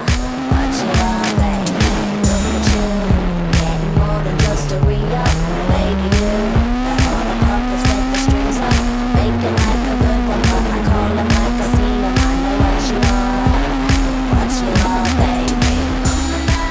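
Rally car engine at high revs under pop music with a steady beat. The Peugeot 207 S2000's naturally aspirated four-cylinder engine's pitch falls away over a few seconds and climbs back, then holds high with small dips.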